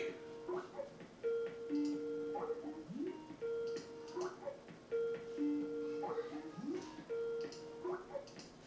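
A phone ringing with a musical ringtone: a short tune of held notes, mostly at two pitches, repeating over and over.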